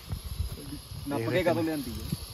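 Portable gas-canister stove burner hissing steadily under an aluminium pot packed with snow that is being melted into water, with a short stretch of a person's voice about a second in.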